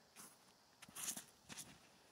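Near silence, broken by a few faint, brief rustles about a second in and again about halfway through.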